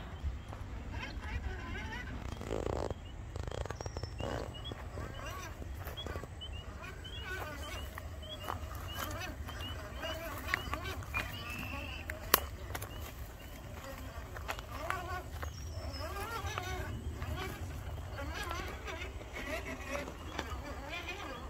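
Faint, indistinct voices over a low steady rumble, with one sharp click about twelve seconds in.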